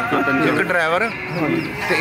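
A woman wailing and crying in grief, her voice wavering up and down in pitch, dipping and rising again about halfway through.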